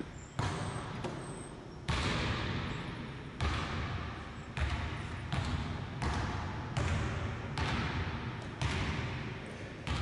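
Basketball dribbled steadily on a hardwood gym floor, about one bounce a second, each bounce echoing in the large hall.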